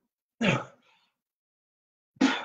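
A man's single short, rough vocal sound, about half a second in, then dead silence.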